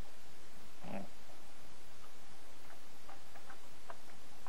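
Steady microphone hiss with a brief low sound about a second in, then a scatter of light computer-keyboard key clicks as text is typed into a web form.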